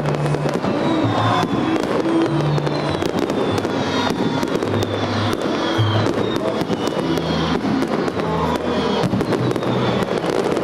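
Fireworks going off in rapid succession, with many bangs and crackles close together throughout.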